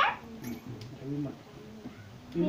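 A high whining cry falling away at the start, followed by faint, low voiced sounds.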